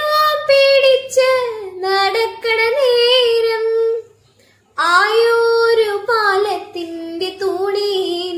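A woman singing a Malayalam folk song (naadan paattu) unaccompanied, in long gliding phrases, with a short pause for breath about four seconds in.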